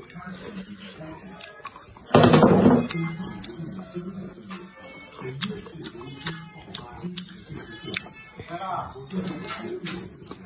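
A person chewing a mouthful of stir-fried vegetables close to the microphone, with many small wet mouth clicks and smacks. A loud, short burst of sound comes about two seconds in.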